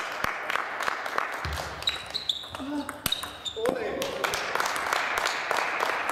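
Table tennis rally: the celluloid ball clicking off rubber bats and the table in quick, irregular strokes, with a few short high squeaks about two seconds in, over the murmur of voices in a sports hall.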